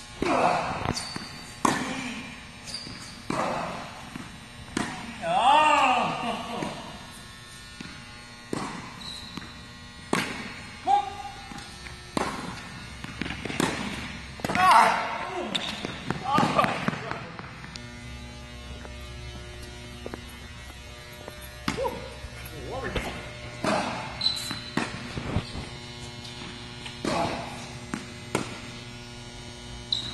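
Tennis rally on an indoor court: rackets striking the ball and the ball bouncing, a run of sharp pops about a second apart, over a steady low hum.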